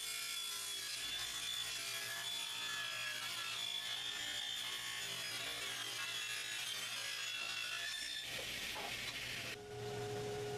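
Table saw ripping a strip of wood: a steady high whine from the spinning blade with the rasp of the cut, running for nearly all of it. Near the end it gives way abruptly to a different steady motor hum.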